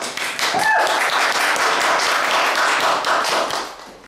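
Audience applauding: many hands clapping densely, dying away near the end, with a brief shout from one voice about half a second in.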